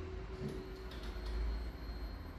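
Jeep Renegade's engine idling: a low, steady hum with a faint, thin high tone over it.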